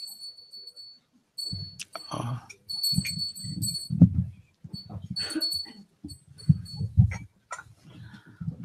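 A metallic ring fades out in the first second. Then come irregular low, muffled thumps and rustles of the microphone being handled and cloth brushing near it, with a few faint metallic pings.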